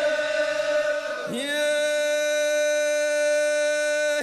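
Men's voices of an Omani al-Azi chant holding out the end of the refrain: one long note for about a second, then a slide down to a lower note held steady for nearly three seconds.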